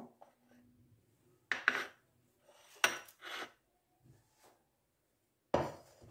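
Ceramic bowls and a metal spoon clinking and knocking as they are moved and set down on a hard tiled surface. There are a few separate sharp clatters about one and a half to three and a half seconds in, then a couple of fainter knocks.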